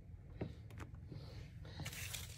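Faint rustling of a plastic shipping envelope being handled, with a few light clicks early on and the rustle swelling near the end.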